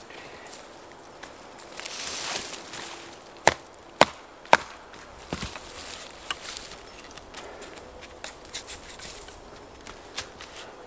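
An axe knocking against a birch log: three sharp wooden knocks about half a second apart, then a fainter knock or two, as the axe stuck in a crack in the log's end is worked free. A short rustle comes just before the knocks.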